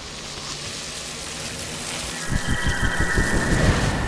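Sound-design effect: a steady rain-like hiss, joined about halfway through by a rapid run of low thuds and a high steady tone.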